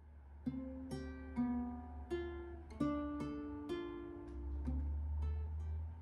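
Small acoustic guitar played as a slow melody of single plucked notes, about two a second, each left to ring, over a steady low hum.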